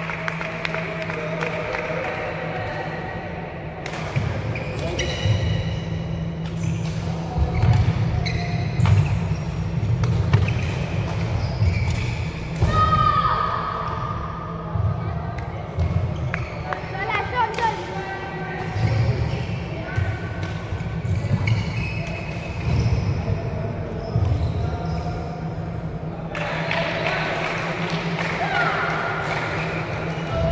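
Badminton rally sounds in a large hall: repeated sharp racket strikes on the shuttlecock and thuds and squeaks of shoes on the wooden court floor, over background voices and a steady low hum.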